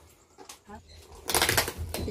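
Plastic wrapping rustling and crinkling as a cake box is cut open with scissors. It is faint at first and turns to loud crackling about a second and a half in.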